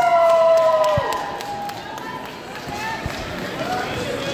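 A loud, drawn-out shout about a second long, its pitch sagging slightly as it ends. A few sharp knocks and scattered voices in the hall follow.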